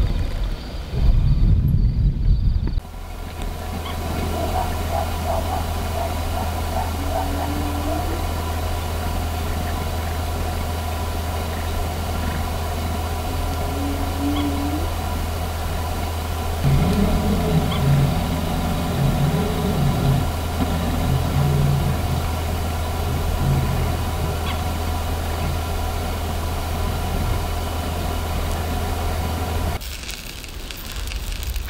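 Steady low hum of an idling engine, starting suddenly a few seconds in, with a short run of deeper broken sounds about two-thirds of the way through.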